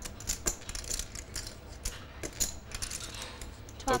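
Poker chips clicking against each other in many quick, irregular clicks, over a low steady room hum.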